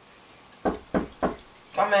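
Three quick knocks on a door, evenly spaced about a third of a second apart.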